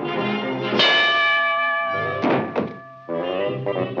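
Orchestral cartoon score punctuated by slapstick fight sound effects: a loud accented chord about a second in, then a couple of short thudding hits around two and a half seconds in, before the music picks up again near the end.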